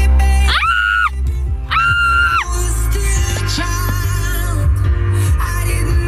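Car radio playing electronic music with a heavy bass line, opening with two loud rising-and-falling synth or vocal notes about a second apart.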